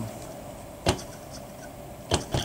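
Electric-bicycle motor in a digital position-control rig giving a steady hum, with one sharp click about a second in.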